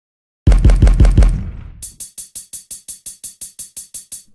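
Ilmatic Drum Machine drum plugin played by the Komplete Kontrol arpeggiator as a fast, even roll of about six hits a second. It starts with heavy low-pitched hits, then thins about a second and a half in to a rapid closed hi-hat roll.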